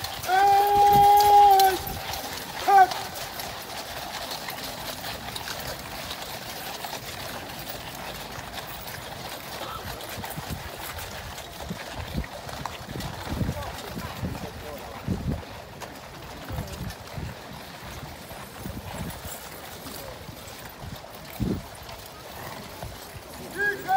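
Cavalry horses walking on a gravel parade ground, their hooves giving soft scattered thuds over a low crowd murmur. In the first two seconds there is a loud, long call held at one steady pitch, and a short one follows about a second later.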